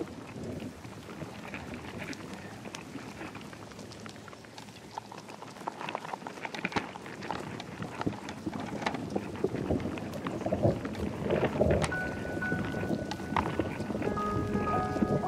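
Experimental electronic soundscape of noisy, rain-like hiss and scattered crackles, swelling louder over the second half, with a high steady tone coming in near the end.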